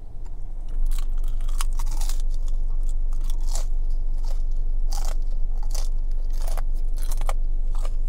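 Close-up crunching and chewing of crispy fried chicken skin: irregular sharp crackles, several a second, starting about a second in. Under it a steady low hum that gets louder at the same moment.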